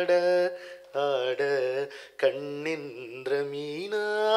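A man singing unaccompanied into a microphone: three phrases of long held notes with wavering, ornamented pitch, broken by short breaths about half a second and two seconds in.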